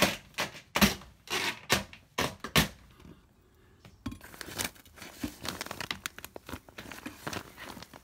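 Vinyl soffit panel being pulled down, giving a run of sharp cracks and snaps over the first three seconds as it bends and pulls out of its track. After that comes a softer crinkling rustle of the paper facing on fibreglass insulation as a hand pushes in among it.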